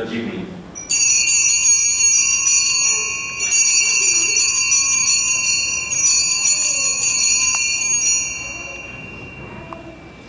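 Altar bells rung in three long shakes at the elevation of the chalice, marking the consecration: a bright, rapid jingling ring that dies away after about eight seconds.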